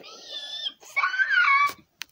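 Two high-pitched squeaky vocal calls, each under a second long, with the pitch bending up and down, followed by a brief click.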